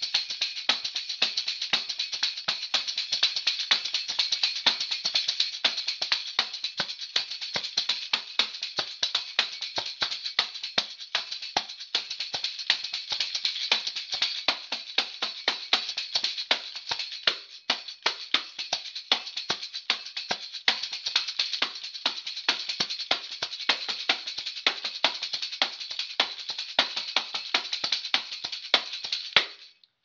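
Tambourine played in a fast, driving rhythm, shaken and struck with the palm so its metal jingles ring almost without a break. There is a brief dip just past halfway, and the playing stops shortly before the end.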